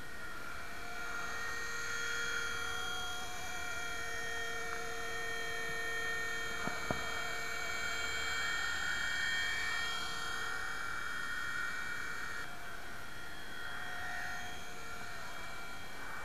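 Nine Eagles Solo Pro 270a RC helicopter in flight: its electric motor and rotor give a steady whine of several tones that drifts slightly in pitch, with two sharp clicks about seven seconds in.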